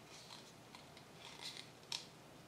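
Faint handling noises as a gloved hand works with a cup on the table: soft rustling and scraping, then one sharp click near the end.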